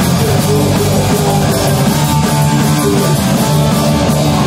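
Hardcore punk band playing live: distorted electric guitar, bass guitar and drum kit, loud and dense without a break.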